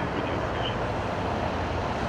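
Steady low rumble of freeway traffic and running vehicle engines.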